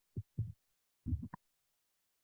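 A man's voice giving three short, low murmured sounds in the first second and a half, then silence.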